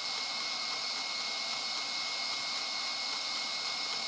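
Electric stand mixer running steadily at high speed, whipping cream with pumpkin, maple syrup and cinnamon into a pavlova filling: a steady high motor whine over a rushing whir.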